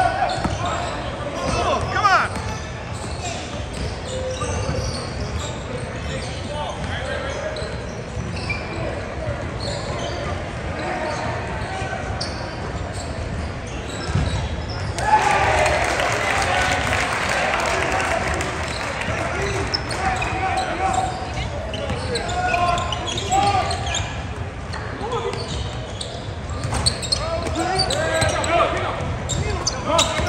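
Basketball game sounds in an echoing gymnasium: a ball bouncing on the hardwood court under a steady background of crowd voices and player calls. For about five seconds around halfway the crowd noise swells louder.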